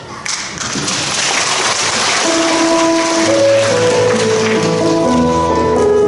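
Audience applause just after the start, fading as instrumental music comes in about two seconds in with slow sustained notes, the introduction to a song.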